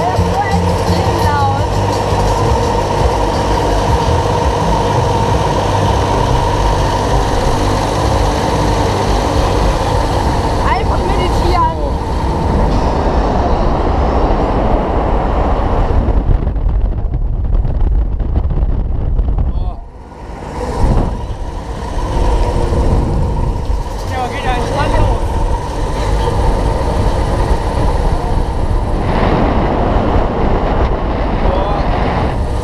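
Ride noise on board a Mondial Turbine fairground ride as it starts and swings up: a steady mechanical drone mixed with voices. The sound dips briefly, about two-thirds of the way in.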